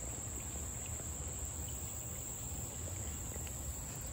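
Insects singing outdoors in a steady, unbroken high-pitched drone, over a faint low background rumble.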